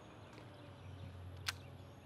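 Rod-and-reel cast of a weighted soft-plastic lure, heard as one sharp tick about one and a half seconds in over a low steady hum.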